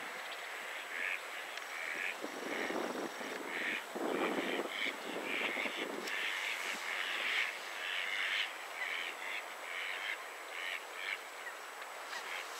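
Ducks calling: a run of short, harsh calls, several a second and irregular, from about a second in until near the end. A rushing, wind-like noise lies under them for a few seconds around the middle.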